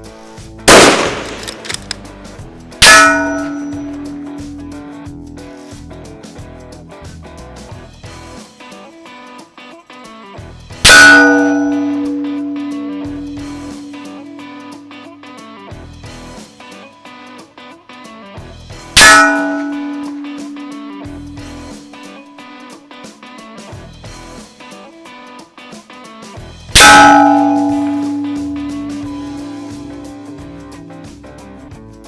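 A rifle shot, then a steel target plate ringing with a clang as it is hit. Three more hits on the steel follow about eight seconds apart, each ringing out and fading over several seconds.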